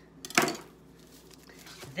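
A single short, sharp rip of packaging about half a second in, as a package is cut or torn open with a knife, followed by quiet handling.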